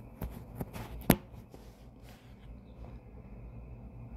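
Handling noise from a phone held right at the microphone: a few light taps and rubs of fingers on it, with one sharp click about a second in.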